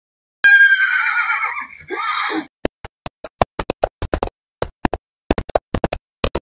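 A horse whinny, one pitched call that falls in pitch and lasts about two seconds, followed by a run of short, sharp knocks in uneven groups.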